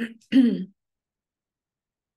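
A woman clearing her throat: a short sound right at the start, then a longer one about half a second in.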